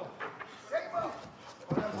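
A short, faint shouted voice about a second in over a low background, then a commentator starts speaking at the very end.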